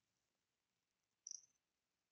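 Near silence, broken about a second in by a brief cluster of quick, faint high clicks from computer keyboard keys as the terminal command is typed out and entered.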